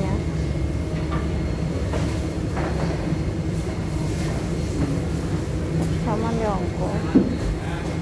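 Busy market-hall ambience: a steady low rumble with faint background voices. A short spoken phrase comes about six seconds in, and a single sharp knock follows just after seven seconds.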